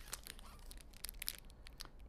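Plastic wrapper of a peanut brittle bar crinkling as it is handled and turned over: a run of soft, irregular crackles.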